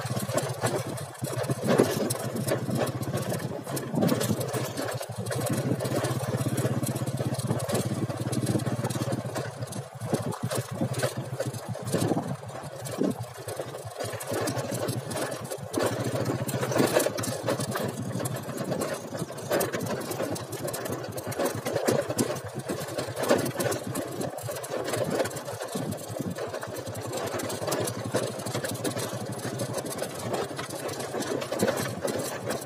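Motorcycle engine running steadily at low speed, with frequent knocks and rattles from riding over a rough dirt track.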